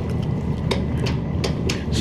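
Steady low hum and rumble inside a vintage Otis traction elevator car, with a series of about seven light clicks as the car-panel floor buttons are pressed.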